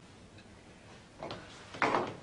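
A woman drinking from a glass bottle: two short gulps in the second half, about half a second apart, the second louder.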